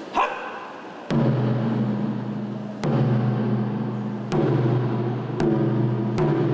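Japanese taiko drums struck with bachi sticks: a light hit at the start, then four heavy single strokes spaced one to two seconds apart, each leaving a long, deep booming ring.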